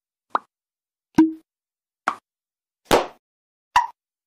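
Five short pop sound effects from an animated end-screen, about one a second, with silence between them. The second carries a brief low tone, and the fourth is the longest and loudest.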